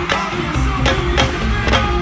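Pagode baiano band playing live: percussion strikes about twice a second over a heavy bass line and sustained keyboard or guitar notes.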